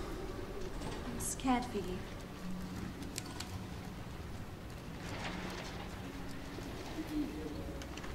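A bird's short falling call about a second and a half in, over a steady low background hum.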